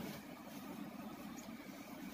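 A faint, steady low hum of background noise with no distinct events.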